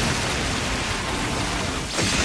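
Anime battle sound effect of a fiery blast: a dense rush of noise that starts suddenly and holds steady.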